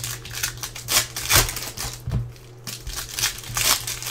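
Foil wrapper of a trading-card pack crinkling in several irregular bursts as hands open it and handle the cards, over a low steady hum.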